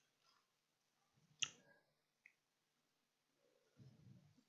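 Near silence: room tone, broken by one short sharp click about a second and a half in.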